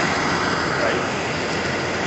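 Steady street traffic noise, with a bus driving past.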